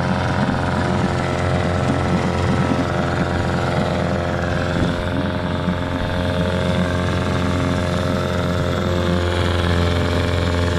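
A 1985 Mercury 9.8 HP two-stroke outboard motor running steadily in the water, pushing a small aluminium boat. It holds one steady speed with no misfires or stalls, on its test run after the power head was refitted with new gaskets.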